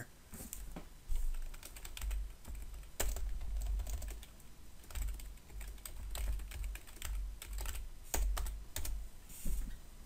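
Typing on a computer keyboard: a run of irregular key clicks with dull low thuds beneath them.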